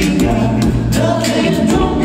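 A cappella vocal group singing held chords over a deep bass voice, with beatboxed vocal percussion hits a few times a second.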